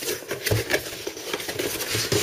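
Cardboard packaging being handled: rustling and scraping as a box insert is pulled up, with a soft knock about half a second in.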